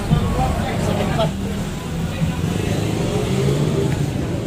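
Street background noise: indistinct voices talking nearby over the steady running of a motor vehicle.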